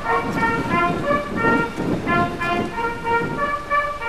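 Brass instruments playing a slow melody in held notes, with a rough low background noise under it.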